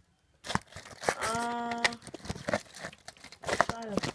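Fabric rustling and crinkling as couch cushions and blankets are handled. A voice holds a wordless note about a second in and a falling one near the end.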